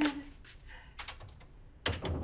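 A few scattered light clicks and taps, with a brief hummed voice sound at the start and a sharper click near the end.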